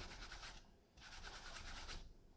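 A wet cleaning wipe scrubbed against the fabric liner inside a felt hat: a faint, scratchy rubbing that stops briefly about a second in, then goes on.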